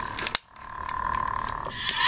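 Hard plastic clicks as pieces of a toy lightsaber hilt are fitted together: a quick cluster of sharp clicks about a third of a second in and one more near the end. A steady high hum runs underneath and stops shortly before the end.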